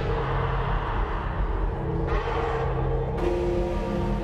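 Slow, ominous wrestling entrance music playing through the arena sound system: sustained low tones over a deep rumble. A rush of noise joins about two seconds in and lasts about a second.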